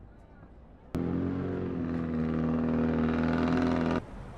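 A car engine running at a steady speed. It comes in abruptly about a second in, grows slightly louder, and stops suddenly near the end.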